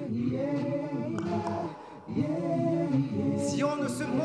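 Layered a cappella vocal loop built up on a loop station: several overlapping wordless male voice lines repeating in a cycle of about two seconds. A short, higher, hissy vocal sound comes in near the end.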